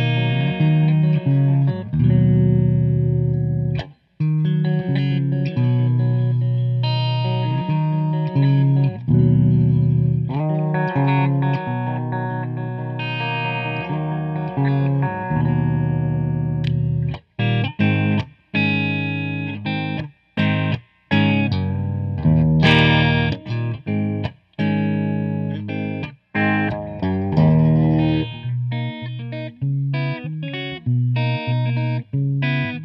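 1989 Gibson Les Paul Custom with Bill Lawrence "The Original" humbuckers, played clean through a Mesa/Boogie amp. It opens with ringing chords and picked notes, then about halfway through turns to short, choppy chord stabs with brief silent breaks between them.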